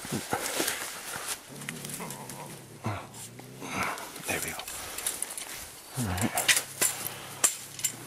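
Bobcat growling low and steadily in two long stretches while pinned with a catch pole, with scuffing and rustling in dry leaves as it struggles.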